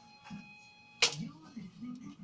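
A single sharp clack of venetian blind slats about a second in, as a cat pushes between them onto the windowsill, with faint voices and music behind.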